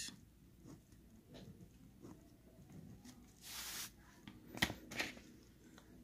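Faint scratching of a pen writing numbers on paper, with a short scratch a little past halfway and two sharp clicks soon after.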